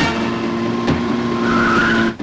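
Vehicle tyres skidding and squealing as a jeep brakes hard, with a wavering screech near the end, over a steady rumble of engine and road noise.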